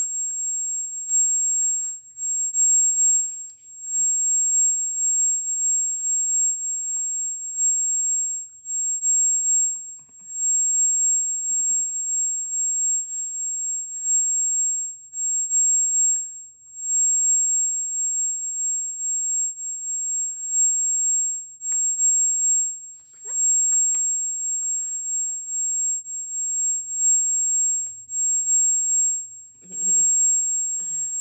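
A steady, very high-pitched whine or tone that holds one pitch without a break, with faint mouth and voice sounds and a few small clicks underneath.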